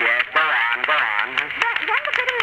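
Voices from a 1930s radio broadcast recording: a brief "yes", then a long, wavering drawn-out vocal sound lasting over a second, heard through the recording's narrow, muffled sound.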